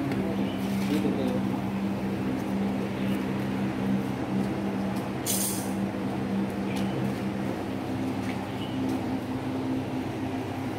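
A steady low mechanical hum, as of a motor or fan running, with a short hiss about five seconds in.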